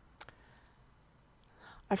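A single sharp computer mouse click, with a fainter tick half a second later, over quiet room tone; a breath in comes just before speech starts at the very end.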